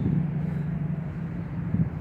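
A man humming one low, steady note for nearly two seconds over a low rumble.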